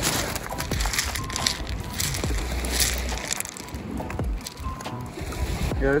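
Loose shore gravel crunching and clattering as feet and hands move through it, with wind gusting on the microphone.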